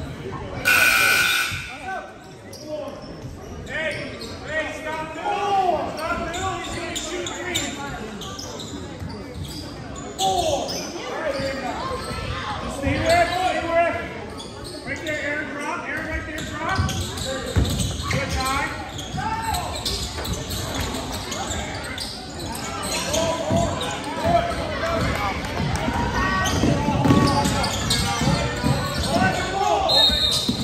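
Basketball being dribbled on a hardwood gym floor amid the shouting voices of players and spectators, echoing in the gymnasium. A brief shrill tone sounds about a second in.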